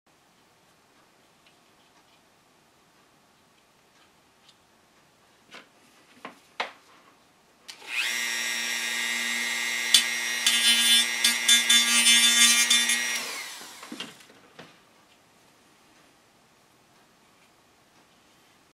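Handheld rotary tool with a small drum bit starting up about eight seconds in and running with a steady high whine, then grinding down the tops of a wooden model ship's bulwark stanchions in rough rasping passes, before it is switched off and winds down. A few light knocks from handling come just before it starts.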